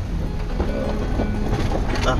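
Car driving, its engine and road rumble heard from inside the cabin, with music playing over it.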